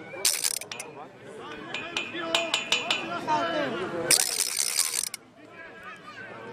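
Players and spectators calling out across a football pitch during play, several voices at once. There are two short bursts of crackling noise, one near the start and one about four seconds in, and a quick run of sharp clicks around the middle.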